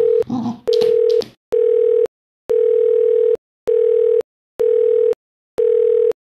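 A smartphone's outgoing call tone: a steady beep repeating about once a second while the call rings out unanswered.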